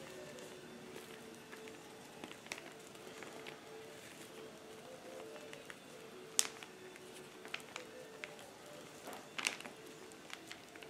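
Foam brush spreading a thick coat of Mod Podge glue over paper: faint soft, sticky brushing strokes with small ticks, and two sharper clicks about six and nine and a half seconds in. A faint steady hum runs underneath.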